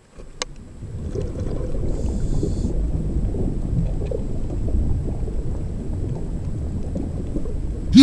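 Underwater ambience: a steady low rumble of water noise picked up through a camera's underwater housing, with a single sharp click shortly after it fades in.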